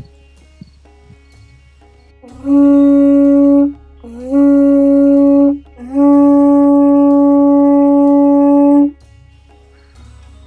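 A conch shell blown three times, loudly: two blasts of over a second each, the second sliding up in pitch as it starts, then a longer blast of about three seconds. Each blast is a single steady, horn-like tone.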